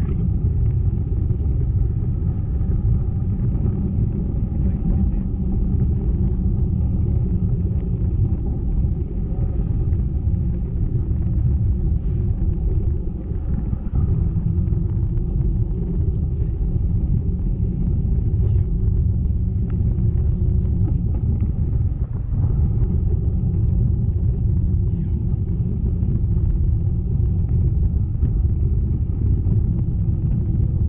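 Steady low wind rumble buffeting the camera microphone of a parasail in flight.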